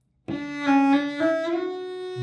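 Cello played with the bow: after a moment of silence, a short phrase of a few sustained notes, each stepping a little higher than the last.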